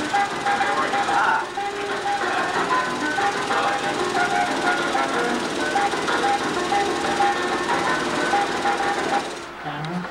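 Coin-operated love-tester arcade machine running its test cycle: a string of electronic beeps and tones that steps from pitch to pitch over a rattling buzz as the heart lights flash. It cuts off suddenly about nine and a half seconds in.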